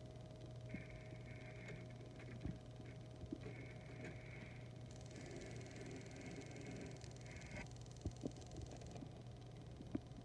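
Quiet room tone with a steady low hum, and a few soft, scattered clicks from handling.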